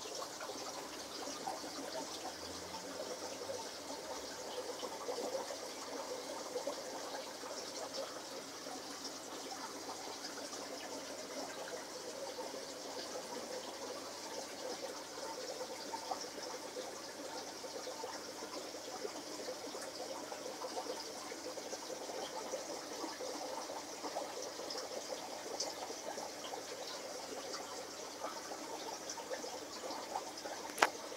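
Steady bubbling and trickling of aquarium water aerated by air stones.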